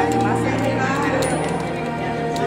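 Popcorn popping in a non-stick pan under a glass lid: scattered, irregular sharp pops and ticks against the lid. Background music and voices run underneath.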